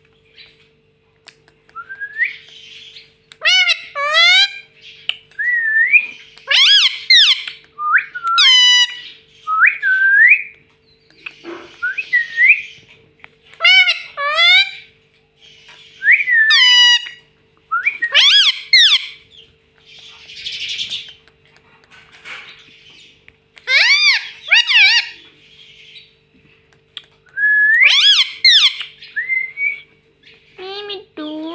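Indian ringneck parakeet calling: a long series of short whistled chirps and rising whistles, one every second or so, mixed with a few rasping screechy calls.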